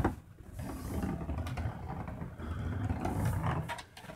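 A large 3D-printed plastic geode sphericon rolling across a hard tabletop: an uneven low rumble as it tips from one rolling surface to the next, with a few light knocks, dying away near the end.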